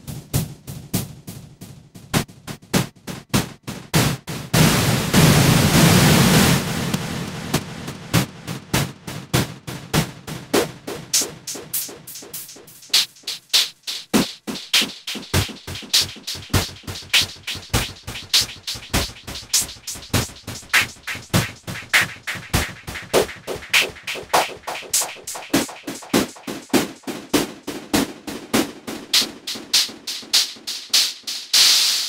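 Eurorack modular synthesizer patch built on a Steady State Fate Quantum Rainbow 2 analog noise module, playing a continuous rhythm of short percussive noise hits. A loud swell of hiss comes in about four to five seconds in and dies away by seven seconds. From about fourteen seconds the hits lose their low end and settle into an even, brighter pulse.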